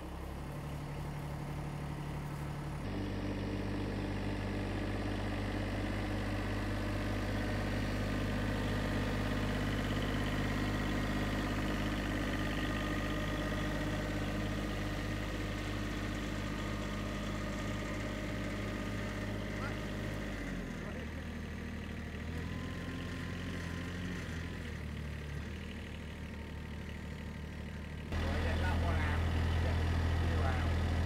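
Compact tractor's engine running steadily at a low idle. Its pitch and loudness shift a little a few times, and it is louder near the end.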